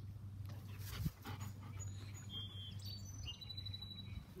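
A golden retriever whining faintly in a few short, high-pitched peeps in the second half, with a soft thump about a second in.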